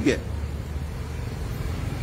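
A low, steady outdoor rumble fills a pause in speech, with the tail of a spoken word right at the start.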